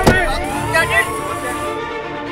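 A sharp thud, then a police siren wail rising slowly in pitch and levelling off, with short shouts from men.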